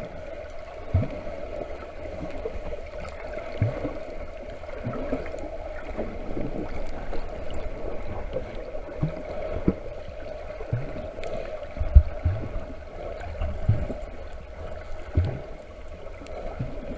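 Muffled underwater sound picked up through a camera's waterproof housing: water moving against the housing with a steady drone and irregular low thumps, the loudest thump about twelve seconds in.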